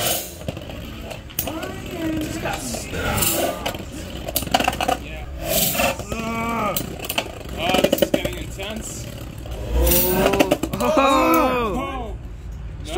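Two Metal Fight Beyblade tops spinning in a plastic stadium and clashing, with sharp clicks at irregular moments as their metal wheels hit, under people talking.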